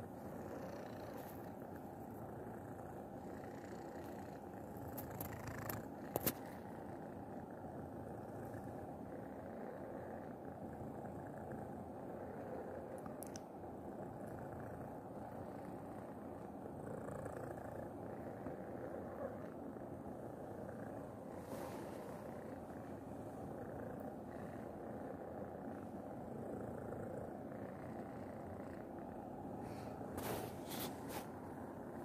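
Domestic cat purring steadily right against the microphone, with a sharp knock about six seconds in.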